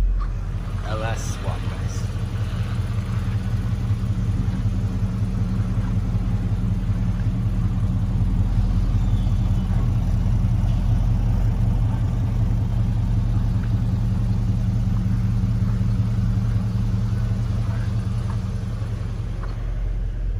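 LS V8 engine in a 1955 Chevrolet Bel Air idling steadily.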